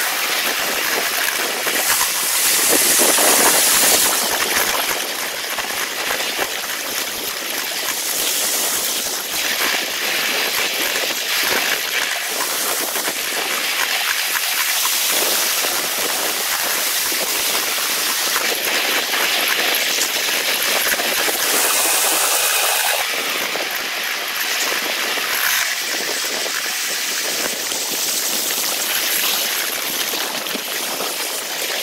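Ride-along sound of a riding-scale miniature train played back at eight times normal speed: the wheel-on-rail clatter and wind run together into a steady, dense hiss with a fast patter of clicks.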